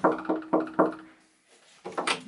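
Knocking on an interior door: about four quick knocks in the first second, then a pause.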